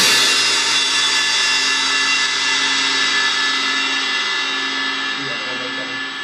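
Zildjian ZBT cymbals ringing out after the last hit of the drumming, a shimmering sustain that fades slowly over several seconds, with a low drum hum under it.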